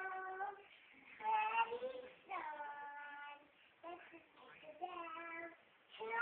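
A young child singing without accompaniment, in several held notes broken by short pauses between phrases.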